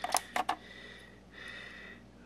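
A few light clicks and knocks in the first half second as parts in the engine bay are handled and moved aside by hand.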